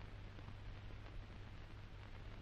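Faint steady low hum and hiss from an old film soundtrack, with no distinct sound event.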